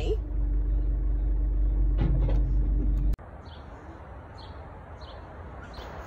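Heavy machinery engine rumbling steadily with a steady hum over it, heard from inside a ute's cab while a loader fills the tray with compost. It cuts off suddenly about three seconds in to a quieter outdoor background with a few faint short high chirps.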